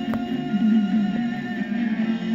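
Music with guitar playing through the speaker of a 1948 Westinghouse H104 tube table radio.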